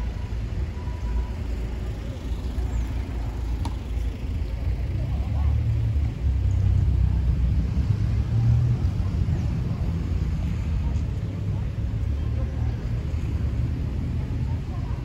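Outdoor town street ambience with a steady low rumble that swells for a few seconds in the middle, from passing road traffic and wind on the microphone.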